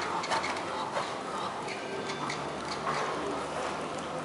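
Knabstrupper horse cantering on soft arena footing: irregular short hoof thuds and clicks, over the chatter of spectators.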